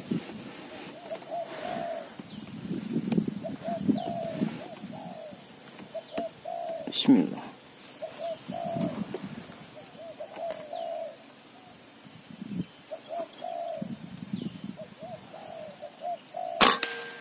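Spotted doves (tekukur) cooing over and over, short soft notes in repeated phrases. There is one sharp click about seven seconds in.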